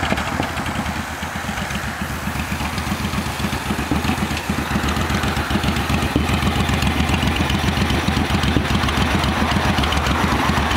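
2006 Suzuki Boulevard C90T's 1500 cc V-twin engine running at low speed, with an even, pulsing beat. It grows louder as the bike rolls up close and slows to a stop.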